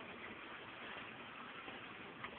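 Faint, steady background noise with no distinct sounds in it.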